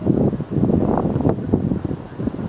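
Wind buffeting the camera's microphone: a loud, uneven low rumble.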